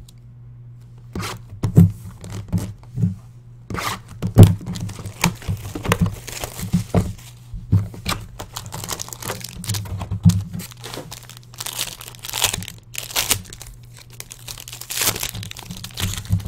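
Plastic and foil packaging of a 2014 Playbook football card box being torn and crinkled open, in repeated rustling bursts with short knocks of the cardboard box and its contents against the desk, over a steady low hum.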